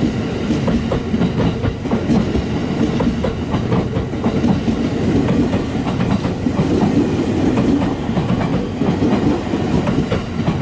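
Electric multiple-unit commuter train running past along the platform: a steady rumble with a rapid run of wheel clicks over the rail joints.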